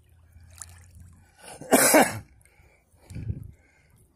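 A person coughs once, loudly and briefly, about halfway through, with a fainter low sound near the end over faint trickling river water.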